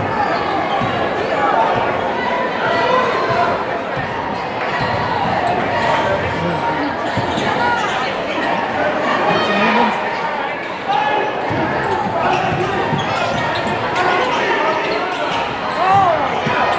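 Indoor basketball game: the ball bouncing on the hardwood court among players' and spectators' voices and crowd chatter, all echoing in a large gym.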